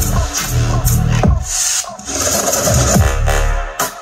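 Dubstep-style electronic music played loud through a Skar SDR-8 8-inch dual 2-ohm subwoofer in a 1 cubic foot ported box tuned to 34 Hz, the deep bass falling in pitch in repeated sweeps. The bass cuts out briefly about a second and a half in and again at the very end.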